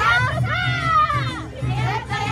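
Awa Odori dancers' high-pitched shouted calls, voices gliding up and down, over the parade's festival music and the noise of the crowd.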